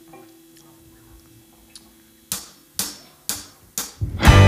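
Drumsticks clicked together four times, about half a second apart: a drummer's count-in for the next song.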